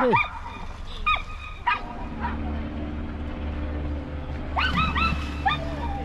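Excitable dog barking in short high yips: single yips about one and two seconds in, then a quick run of four or five near the end. A steady low drone runs underneath from about two seconds in.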